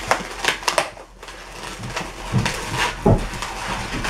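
Inflated latex twisting balloons being handled and tied together: a series of short, irregular rubbing and scraping sounds of latex on latex and on hands.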